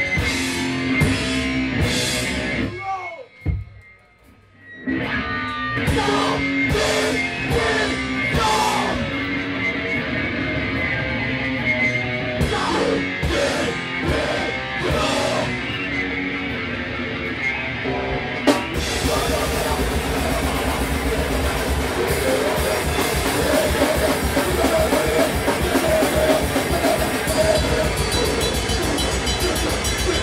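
Live rock band playing loud in a club: electric guitar and drum kit. The band stops dead about three seconds in, comes back with stop-start hits, then plays continuously at full tilt from about eighteen seconds.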